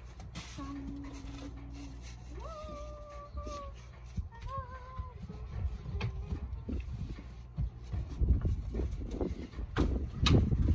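A Cane Corso whining in a few thin, high-pitched whines, each about a second long, in the first half. These are followed by louder scuffing and crunching noises near the end.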